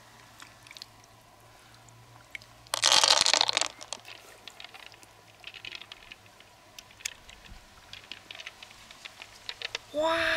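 Hands handling an opened freshwater mussel and loose pearls: scattered small clicks and taps. About three seconds in comes a loud burst of rough noise lasting about a second.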